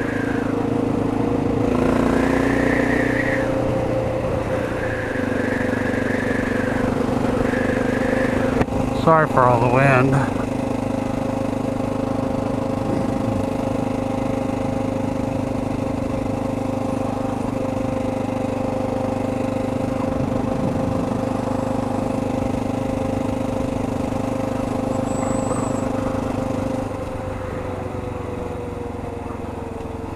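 Motorcycle engine running steadily at cruising speed. A brief warbling sound about nine seconds in. Near the end the engine note falls a little as the bike eases off.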